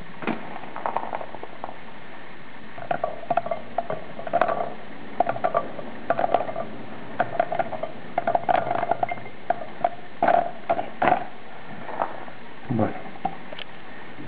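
Sloes dropped a few at a time into a glass bottle, clicking against the glass and against the berries already inside: an irregular patter of small hard clicks.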